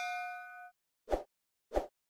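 Notification-bell 'ding' sound effect of a subscribe animation, ringing out with several clear tones and stopping abruptly about two-thirds of a second in. Two short soft pops follow, a little over half a second apart.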